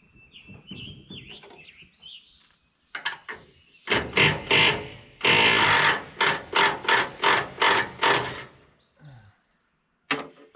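Hand-tool work on a haybine's steel sickle bar: a run of loud, scraping metal strokes, about three a second, from about three seconds in until shortly before the end. Birdsong before it.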